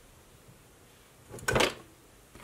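A quiet room, then about one and a half seconds in a short clatter of makeup products and cases being picked up and knocked together on a desk.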